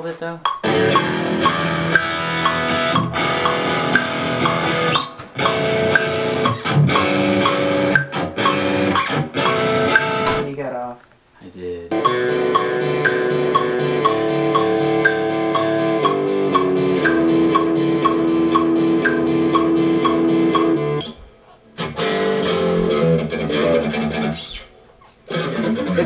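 Electric guitar playing a riff of chords and held notes in several phrases, stopping briefly a few times, over a steady metronome click.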